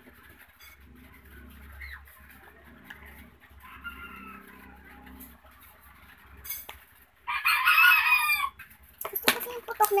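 A rooster crowing: a faint crow about four seconds in, then a louder one lasting over a second near the end, followed by a few sharp clicks.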